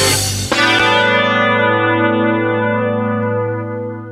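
Final chord of a heavy metal song: the drums and cymbals stop about half a second in, leaving a distorted electric guitar chord ringing and slowly fading out.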